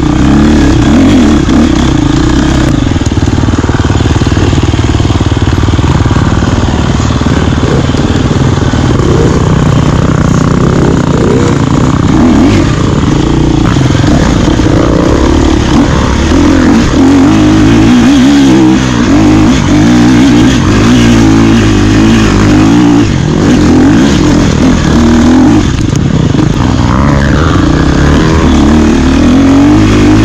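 Enduro dirt bike engine running loud and continuous, its pitch rising and falling over and over as the throttle is opened and closed.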